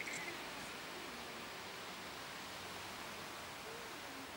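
Quiet outdoor background: a steady faint hiss, with a couple of soft clicks just at the start.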